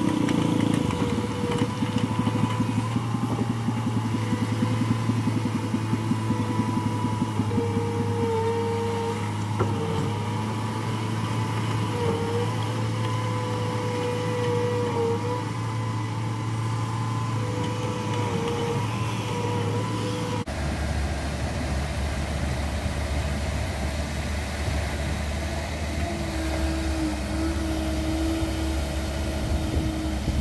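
Diesel engine of a Cat 307.5 amphibious excavator running steadily at working speed, its pitch dipping briefly now and then as the machine works. About two-thirds of the way through, the engine sound changes abruptly to a lower, deeper tone.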